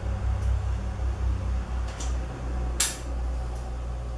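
Caulking gun squeezing out a continuous bead of PU silicone onto a stainless steel sink bowl: a few short clicks from the gun and nozzle on the steel, the sharpest just before three seconds in, over a steady low hum.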